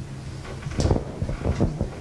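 Brief knocks and shuffling of people moving, over a steady low hum from the room.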